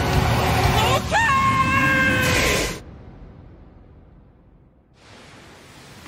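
A drawn-out scream from a dubbed anime voice over a loud low rumbling sound effect. The pitch jumps up about a second in and is held, then everything cuts off abruptly about three seconds in. A quiet hiss follows and swells near the end.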